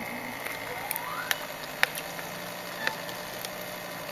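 Homemade ABS filament extruder running: a steady low motor hum, with a short rising tone about a second in and a few sharp clicks.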